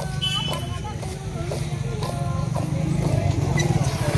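A Telugu Bathukamma folk song with a singing voice, its melody thinning out after about two and a half seconds, over a low pulsing rumble that grows louder toward the end.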